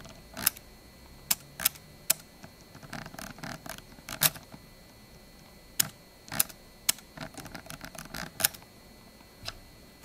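Scroll wheel of a Razer Basilisk V3 gaming mouse being turned: runs of fast notched ticking from tactile scrolling, between single sharp clicks.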